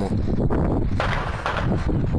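Wind buffeting the phone's microphone: a steady low rumble, with a louder rush of noise about a second in.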